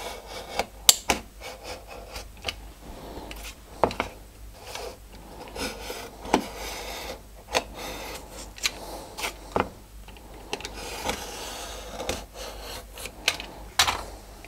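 Utility knife blade cutting and scraping along the edge of a wooden panel, trimming transfer paper: irregular scratchy strokes with short sharp clicks.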